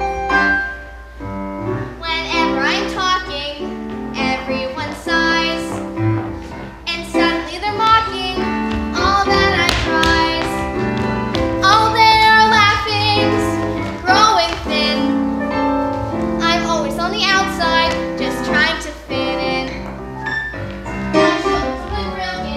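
A child singing a musical-theatre song over piano accompaniment. The piano plays alone for about the first two seconds before the voice comes in.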